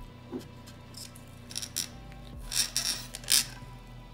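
Quiet background music, with a few short clicks and rattles of small craft items being handled on a tabletop, the loudest about three and a half seconds in.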